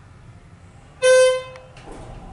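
Schindler 330A hydraulic elevator's floor chime: a single electronic ding about a second in, fading within half a second, as the car reaches the next floor. It sits over the faint low hum of the car travelling.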